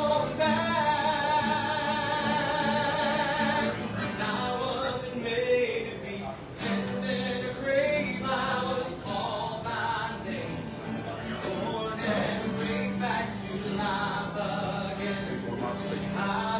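Live singing to an acoustic guitar: a hymn-like song, opening on a long held note with vibrato, then shorter sung phrases over the guitar.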